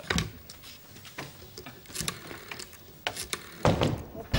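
Rotary telephone dial being turned and whirring back with quick small clicks as a number is dialled. A few louder sharp knocks come near the end.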